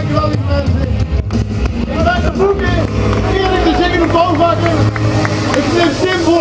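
A man speaking into a handheld microphone over a public-address system, with a steady low hum underneath.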